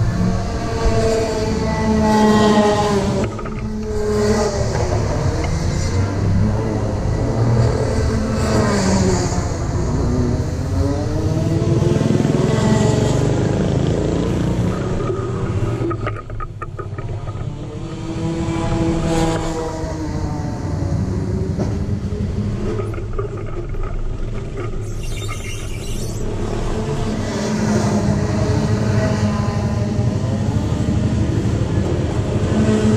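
Racing kart engines running on the circuit, several overlapping engine notes that rise and fall every few seconds as the karts accelerate and brake.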